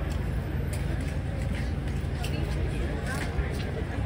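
Indistinct voices of passers-by talking, no words clear, over a steady low rumble, with a few faint clicks.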